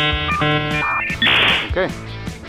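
Edited-in musical sound effect: a held, guitar-like chord with high ringing tones, followed about a second in by a short burst of hiss, over background music.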